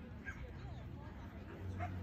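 A dog whining and yipping, a few short rising and falling whines.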